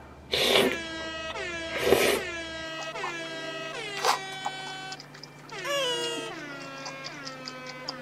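Three short slurps of long, wide noodle rice cakes in cream sauce being sucked in, about half a second in, about two seconds in and about four seconds in. Light background music of held, slightly drooping synth notes plays under them.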